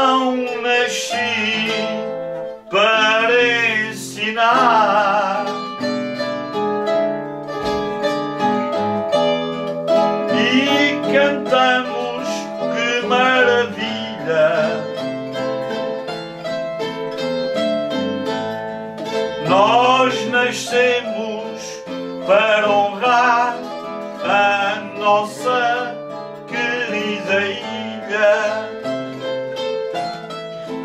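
A man singing an improvised verse in Portuguese, accompanied by a Portuguese guitar and an acoustic guitar plucking a steady accompaniment. The sung lines come in phrases, with stretches of guitars alone between them.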